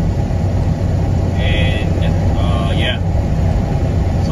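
Steady low drone of a truck's engine and tyres heard from inside the cab while cruising on a highway.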